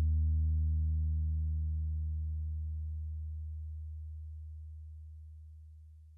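The closing low note of a soul/R&B song rings out alone, with a few faint overtones above it, and fades steadily almost to silence.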